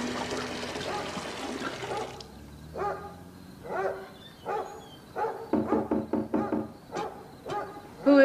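Tap water running into a metal kettle for about two seconds, then a string of short, irregularly spaced pitched vocal sounds.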